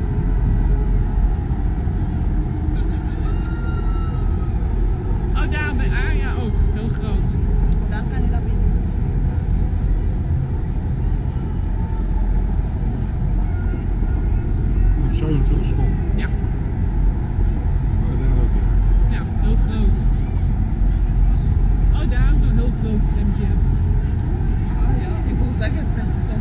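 Steady low rumble of city traffic noise, with people's voices breaking in now and then.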